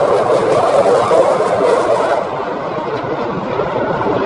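Loud, steady jet noise from a USAF F-16 fighter flying past, easing slightly about two seconds in.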